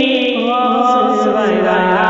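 A man singing a naat (devotional Urdu kalam) in long, ornamented lines that glide between notes.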